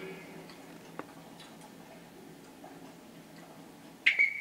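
Faint hush of an indoor speed-skating arena while skaters hold the set position before the start signal, with one sharp click about a second in and a few fainter ticks.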